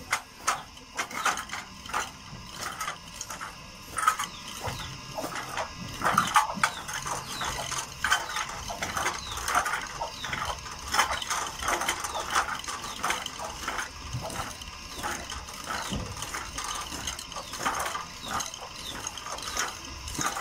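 Homemade pump drill being pumped by its wooden crossbar, the spindle spinning back and forth as the bit drills into a rusty metal sheet. It makes a rhythmic clicking and rattling, about two to three clicks a second, with a whir that swells and fades with each stroke.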